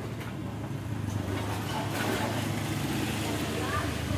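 A steady low hum, stronger from about half a second in, with faint voices in the background.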